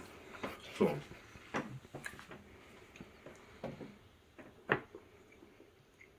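Faint, scattered clicks and soft mouth sounds of someone biting into and chewing a piece of concha, a Mexican sweet bread, with one sharper click a little before the five-second mark.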